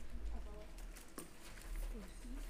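Faint, low voices murmuring in a quiet hall, with one sharp click a little after a second in.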